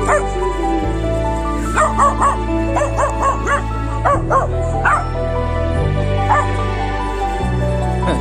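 A young Taiwanese native dog puppy barking at a stranger in short, high-pitched yipping barks, one right at the start, then a rapid run of them between about two and five seconds in, and a last one a little past six seconds, over background music.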